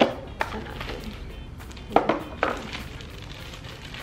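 Cardboard packaging and its paper wrapping being handled during unboxing: a handful of short, sharp taps and rustles, one at the very start, another half a second later, and a quick cluster around two seconds in.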